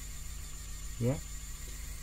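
3D printing pen running as it extrudes white filament, a steady low hum with a faint high whine.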